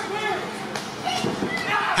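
Scattered voices of a small crowd in a hall, with a few soft thumps from wrestlers shifting on the ring canvas as one lifts the other into a suplex.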